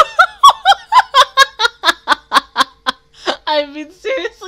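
A woman laughing hard: a rapid run of about fifteen short 'ha' pulses, roughly five a second, ending in a longer drawn-out voiced sound near the end.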